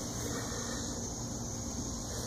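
Steady outdoor garden background: a continuous high-pitched chirring of insects, with a low hiss beneath and no distinct events.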